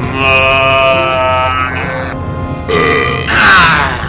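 A person's loud drawn-out vocal cry or grunt lasting about a second and a half, then two shorter cries near the end, the last falling in pitch, over background music.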